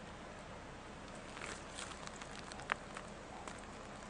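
Faint outdoor bush ambience: a low steady hiss with scattered small crackles and clicks, and one sharper click about two-thirds of the way through.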